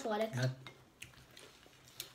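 A voice speaks briefly at the start, then faint clinks and handling sounds of cutlery and plates at a breakfast table.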